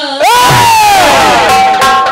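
A loud drawn-out shouted cry over the sound system: it leaps up in pitch and then slides steadily down for about a second. Near the end comes a short held note and a sharp click.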